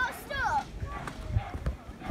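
A young child's voice calls out briefly, falling in pitch, about half a second in. A few light knocks follow in the second half.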